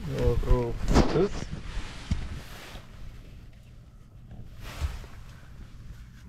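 A short burst of a person's voice in the first second and a half, then quieter rustling and handling noise with a few small knocks.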